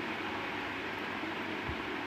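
Steady hissing noise from a kadhai of chicken simmering on a gas stove, with a soft low knock near the end.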